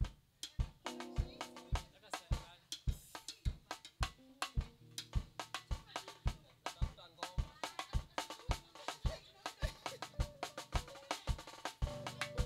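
Live band music led by a drum kit playing a steady beat. The bass drum lands nearly twice a second, with snare and rim hits between, over bass and other pitched notes that fill in more fully about halfway through.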